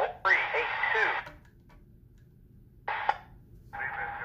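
Synthesized voice of a CSX trackside equipment defect detector reading out its report over a scanner radio, thin and tinny. It speaks for about a second, pauses, gives a short blip near three seconds, then the radio comes back near the end with a steady tone under the hiss.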